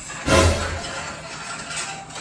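A sudden clattering knock about a third of a second in, followed by continuing noise.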